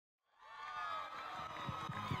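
Audience cheering and shouting, fading in just after the start: many voices whooping at once.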